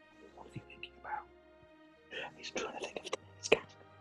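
Soft background music under quiet, breathy laughter and chuckling from a few men over a video call, mostly in the second half.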